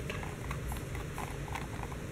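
Faint handling noise: a few light taps and knocks as a rubber CV boot is moved about by hand on a plastic lid.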